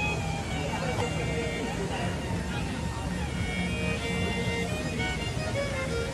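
A street performer's violin playing a slow melody of long held notes, over the murmur of people talking.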